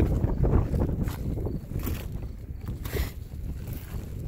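Wind buffeting a handheld phone's microphone: a low, uneven rumble, with a few faint steps on gravel.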